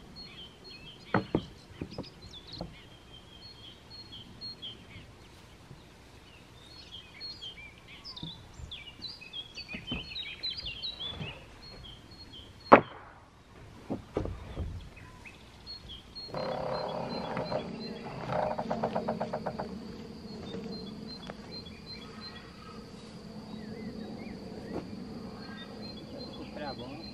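Wooden planks being unloaded and dropped onto a pile, giving scattered hollow wooden knocks, with one sharp knock about halfway through the loudest, over outdoor birdsong. In the last third a steady high-pitched buzz with a low hum sets in.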